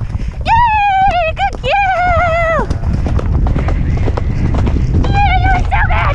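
Horse galloping on a soft, muddy track: a steady run of hoofbeats under a low rumble of wind on the helmet microphone. Over it come two long, high-pitched, slightly falling vocal calls in the first three seconds and a shorter one about five seconds in.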